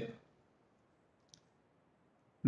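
Near silence with a single short, faint click just over a second in.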